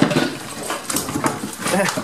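A goat jostling close by in a shed, with clattering knocks of hooves and objects. A wavering goat bleat comes near the end.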